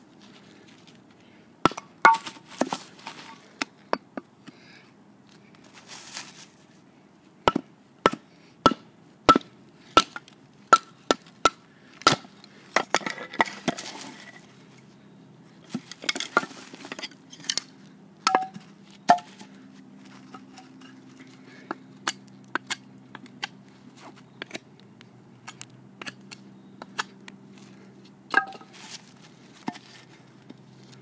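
Fixed-blade steel knife, a Schrade SCHF1, driven by repeated sharp blows into hard dead wood, each blow with a short metallic ring. A run of strikes comes about one and a half a second, followed by the wood cracking and splitting apart, then scattered lighter knocks.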